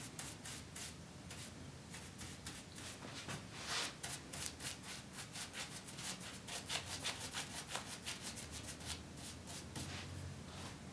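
A paintbrush's bristles stroking paint along the wood of a chair's arm rail: a quick run of short, faint brushing swishes, several a second, coming thickest in the second half.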